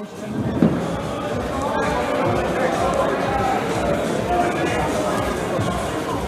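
Steady hubbub of many indistinct voices in a large room.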